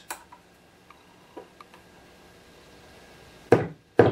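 Only a faint steady hum and a few small handling clicks come from a bass amplifier turned up to maximum with a fully shielded bass guitar plugged in: the shielding keeps the rig nearly noise-free. Near the end come two sharp knocks about half a second apart, the first louder.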